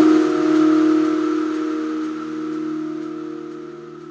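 Outro of a progressive house track: the drums stop and a held synth chord rings on over a hissing noise wash, both slowly fading.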